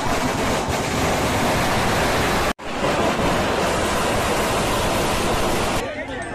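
A long string of firecrackers going off, a loud, dense, unbroken crackle of bangs that smothers the speech at the microphone. It breaks off for an instant about two and a half seconds in.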